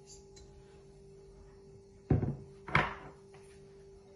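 A metal tablespoon knocks twice against a stainless steel mixing bowl, about half a second apart, each knock with a short ring, after the sugar is tipped in. A faint steady hum runs underneath.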